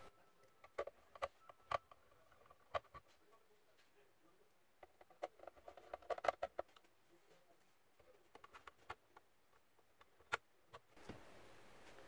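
Faint, irregular clicks and taps of a ZTE 5G router's plastic housing being handled and pressed together during reassembly.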